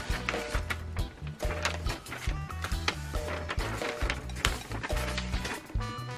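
Background music with a steady, repeating bass line, over light taps and rustles of cellophane-wrapped craft packs being handled and laid down on paper.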